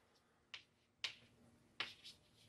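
Chalk striking and writing on a chalkboard: three faint, short clicks, spaced half a second to under a second apart.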